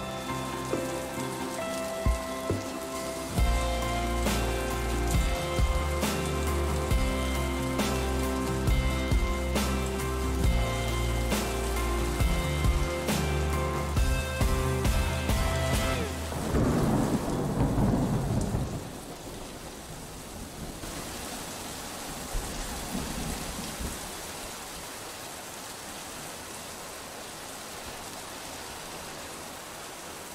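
A music track with a steady beat plays and ends about sixteen seconds in with a falling whoosh, followed by the steady sound of heavy rain for the rest.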